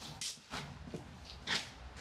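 A few short, soft scuffs of people stepping and shifting on a concrete floor, over a low steady hum.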